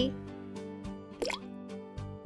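Background music with a single short plop-like water sound effect a little over a second in, quick and rising in pitch, for a spoon dropped into a bowl of water.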